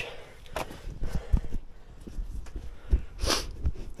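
Footsteps and scattered light knocks, with a short breath-like hiss a little past three seconds in.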